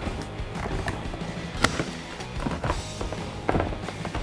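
Aviation snips cutting through a hard epoxy-coated shell: several sharp snips, the loudest about a second and a half in, over background music.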